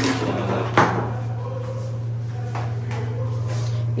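A few sharp knocks and clunks from belongings being handled, the loudest about a second in and a fainter one later, over a steady low hum.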